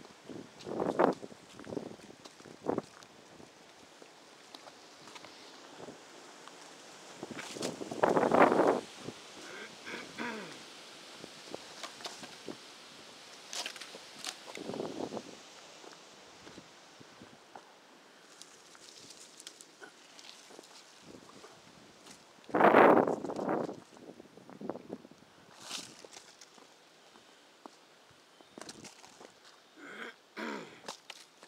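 Footsteps on a wet asphalt driveway strewn with leaves and twigs, irregular and unhurried. There are several louder rustling bursts lasting about a second each, the biggest about eight and about twenty-three seconds in.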